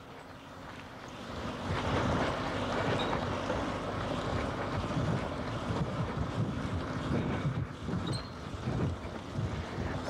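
Wind and rubbing noise on a microphone worn by a man jogging. A rough, uneven rumble builds up about a second and a half in and stays loud.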